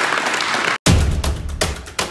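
A group applauding in a hall, cut off abruptly just under a second in, followed by outro music with heavy, evenly spaced drum hits and deep bass.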